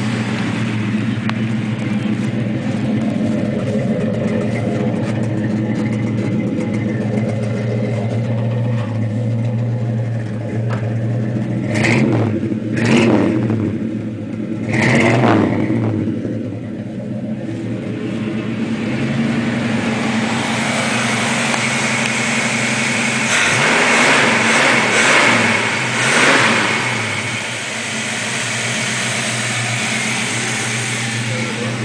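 1970 Chevelle SS's 454 LS5 big-block V8 idling with a steady burble, blipped three times in quick succession about halfway through and revved a few more times later on.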